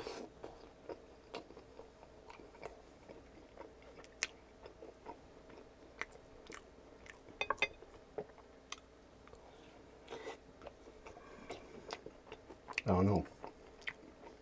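Close-miked eating of a sauced, breaded chicken tender: a bite, then wet chewing with mouth smacks, soft crunches and scattered sharp clicks. About halfway through comes a quick cluster of clicks. Near the end there is a brief low hum from the eater.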